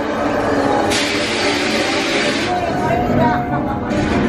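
A sudden hiss of sprayed mist from an animated haunted-house ghost display, starting about a second in and lasting about a second and a half, over the display's voice-like effects soundtrack.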